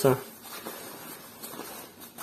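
Faint rustling of a down jacket's quilted nylon shell as a hand presses on it and then gathers the fabric up, with a few soft scuffs.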